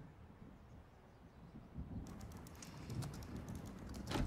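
Faint, irregular key clicks of typing on a laptop keyboard, starting about halfway through.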